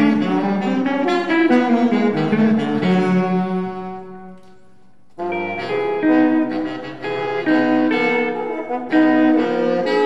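French horn, baritone saxophone and electric guitar playing together in a jazz ensemble. The music dies away about four seconds in, leaving a brief near-pause, then all come back in at once a second later and keep playing.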